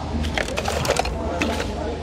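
Irregular light clicks and rustling of small objects being handled, over a steady low rumble.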